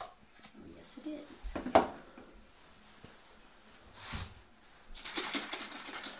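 Plastic squeeze bottle of Hershey's Special Dark chocolate syrup being squeezed upside down over a coffee mug, with short handling noises and one sharp knock a little under two seconds in. A hissy stretch follows from about five seconds in.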